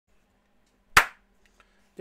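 A single sharp smack of a hand, about a second in, dying away quickly.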